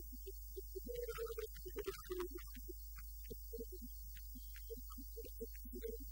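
A low, steady hum, with faint short blips scattered over it and a brief flurry of higher clicks about a second in.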